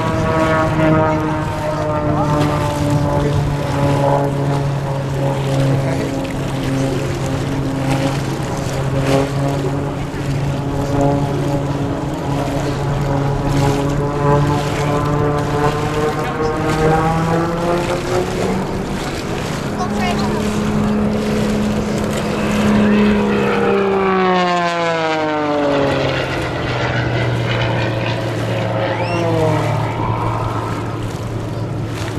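Zivko Edge 540 race plane's six-cylinder piston engine and propeller droning steadily. The pitch rises a little past the middle, then falls steeply about three-quarters of the way through and settles lower.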